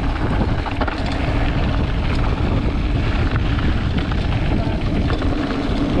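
Wind buffeting the microphone and mountain bike tyres rolling fast over a dirt and gravel trail on a descent, with a steady rumble and scattered small clicks and rattles from the bike.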